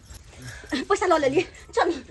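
A man moaning in pain without words, pitch sliding down and back up in a drawn-out cry about half a second in, with another short moan near the end.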